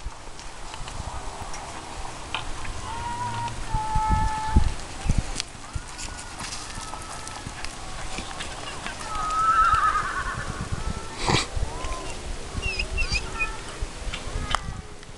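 A horse galloping a barrel-racing pattern on arena dirt, its hoofbeats thudding unevenly as it runs and turns. A loud high wavering call rings out near ten seconds in, followed shortly by a sharp knock.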